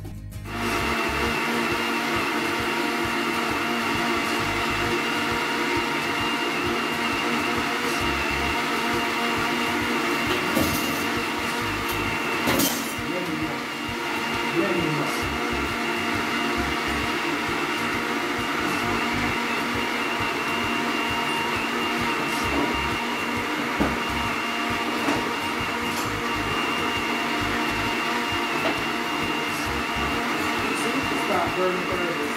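Electric countertop blender switching on about half a second in and running steadily at a constant pitch, blending watermelon for juice. It runs long enough that the motor then gives off a burning-rubber smell.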